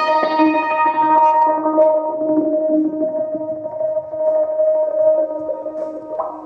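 Novation MiniNova synthesizer played from its keyboard: sustained pitched notes, bright at first and mellowing over the first two seconds, growing gradually quieter toward the end.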